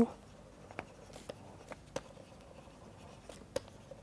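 Stylus writing on a pen tablet: soft scratching with a scatter of light taps as handwriting is added, one tap near the end of the third second standing out.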